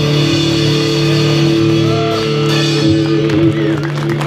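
Live rock band playing: electric guitar holding long sustained notes, with a few small bends, over the drum kit.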